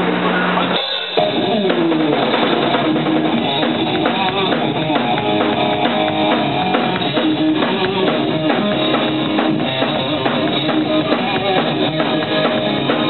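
Live hard rock band playing loud: distorted electric guitars and a drum kit with a steady beat. The band cuts out for a moment about a second in, then comes back in all together.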